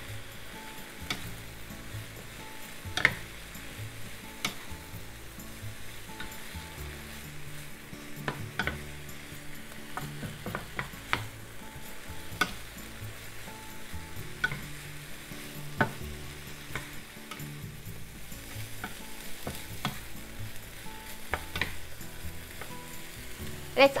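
Broccoli and shimeji mushrooms sizzling in a frying pan as they are stir-fried with a wooden spatula. The spatula knocks against the pan in sharp, irregular taps about every second or two.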